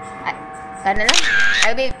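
A person's loud, high-pitched exclamation of excitement, starting about a second in and lasting under a second.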